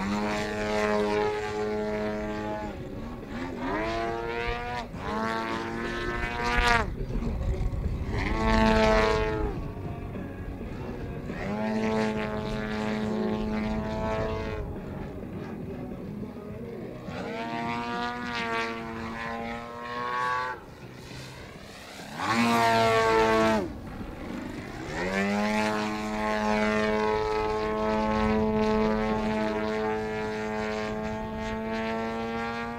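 Petrol GP 123 engine with MTW RE2 tuned pipes driving the propeller of a Pilot RC Laser 103 aerobatic model plane, its pitch sweeping up and down as the throttle is worked through aerobatic manoeuvres. It is loudest in full-throttle bursts about nine seconds in and again around twenty-three seconds in, with a brief throttled-back lull just before the second burst.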